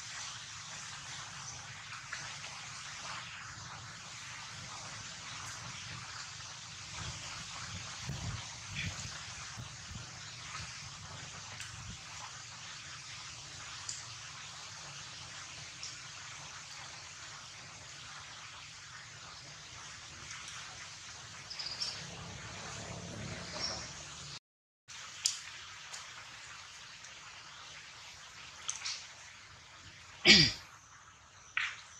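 Steady outdoor background hiss with faint scattered ticks and soft knocks. About three-quarters of the way through, the sound drops out completely for a moment.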